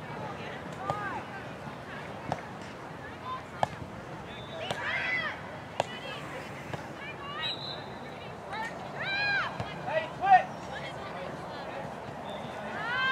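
Distant, unintelligible shouts and calls from players and sideline spectators at a girls' soccer match. Several drawn-out calls rise and fall in pitch over a steady outdoor background, with a few short sharp knocks and the loudest call about ten seconds in.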